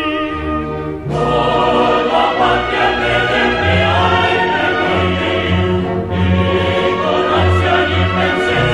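Men's chorus of tenors and basses singing a zarzuela chorus forte with orchestra, the full tutti entering about a second in after a solo tenor line.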